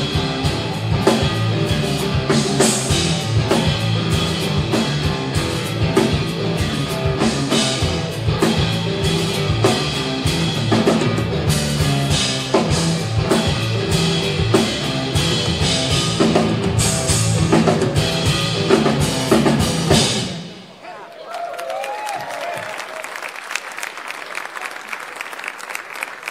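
Live rock trio of electric guitar, electric bass and drum kit playing an instrumental passage that stops about twenty seconds in, followed by audience applause and cheering.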